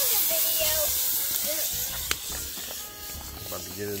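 Beef tips frying and sizzling in a cast-iron Dutch oven over a campfire, stirred with a wooden spoon. The sizzle stops abruptly with a sharp click about halfway through, leaving it much quieter.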